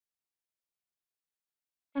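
Near silence, with no sound at all until a woman's voice begins right at the end.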